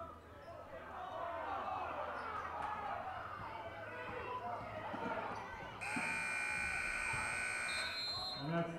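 Gym crowd talking and calling out over one another, then about six seconds in the scoreboard buzzer sounds steadily for about two seconds, marking the end of the third quarter.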